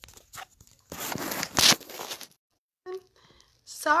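Handling noise from a phone being moved and set down: a loud rustling scrape on its microphone about a second in, lasting just over a second.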